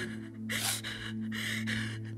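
A woman's sharp, quick breaths and gasps close to a microphone as she cries, over soft background music holding one low steady chord.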